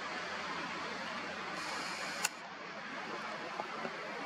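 Steady background hiss with one sharp click a little over two seconds in.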